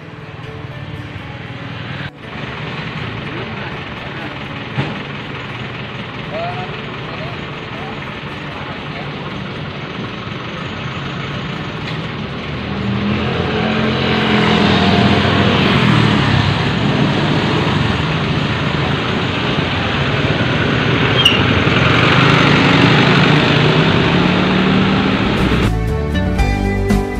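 Road traffic noise: a vehicle engine running, growing louder about halfway through and staying loud, with indistinct voices.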